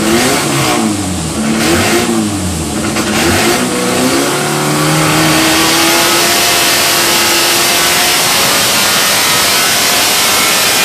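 MGB B-series four-cylinder engine with a crossflow head, running on an engine dyno. It is blipped up and down several times, then from about four seconds in it runs louder with a slow, steady rise in revs.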